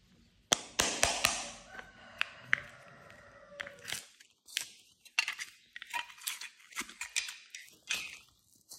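Plastic ice-pop mold case being opened, with several sharp clicks and snaps about half a second in. A run of irregular crackling and crinkling plastic follows as soft modelling clay is peeled out of the clear mold.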